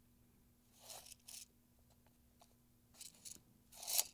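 Faint rustles and a few small clicks of a measuring tape being handled and tucked away against clothing, in short bursts about a second in and again near the end, over a faint steady hum.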